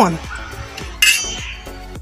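A single bright clink about a second in, ringing briefly as it fades, over soft background music.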